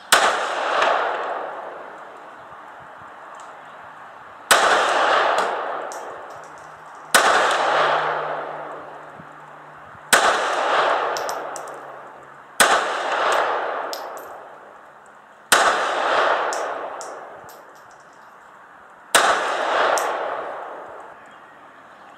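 Seven pistol shots fired one at a time at a paper target, spaced about two and a half to four and a half seconds apart, each followed by a long fading echo.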